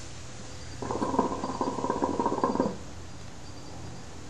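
Hookah water bubbling as smoke is drawn through the base. It is a steady gurgle of nearly two seconds, starting about a second in, over a low hum.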